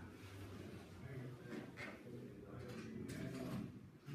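Faint, indistinct talk from people in the room, too low to make out words.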